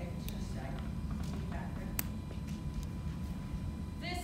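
Faint, distant speech from a presenter at the front of a lecture room over a steady low room rumble, with two sharp clicks, one early and one about halfway.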